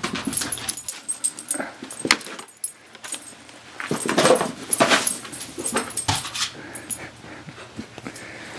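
A dog making short vocal sounds, with irregular scuffles and knocks of movement, while chasing a laser pointer dot across a carpeted floor.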